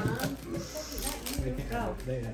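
A foil trading-card pack being torn open and crinkled, with talking over it.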